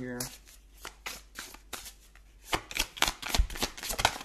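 A tarot deck being shuffled by hand: a few scattered card sounds at first, then a quick run of card slaps and riffles from about halfway in, with a few soft thumps.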